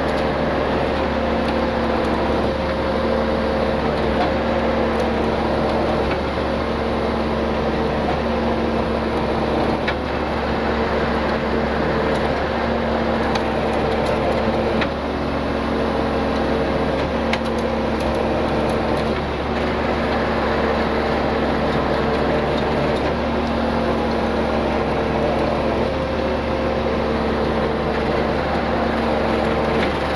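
Truck engine running steadily at an even speed, a constant hum.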